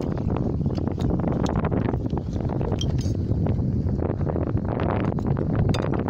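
Metal spoons clinking lightly and irregularly against plates and a cooking pot during a meal, over a steady low rumble of wind on the microphone.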